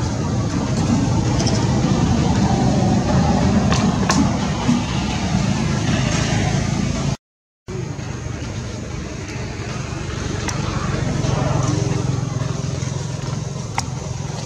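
Steady outdoor background noise, mostly a low rumble with faint indistinct murmuring. It cuts out to silence for about half a second, a little past the middle.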